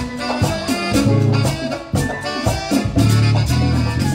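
A live band playing an instrumental stretch of a Latin dance tune, with strong bass-guitar notes, drums and brass over a steady dance beat.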